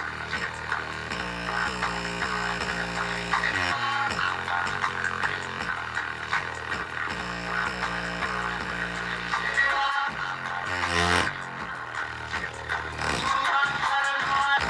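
Music with a steady bass line played through a bare, tape-patched Dayton Audio woofer lying face up, with a hand pressing on its cone.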